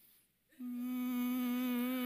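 A man humming one steady, level note for about a second and a half, starting about half a second in, as a vocal imitation of a car pulling away from a green light.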